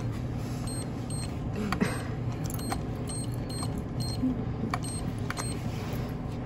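Steady low hum of a store checkout area, with a scatter of faint short clicks and tiny high blips at irregular intervals.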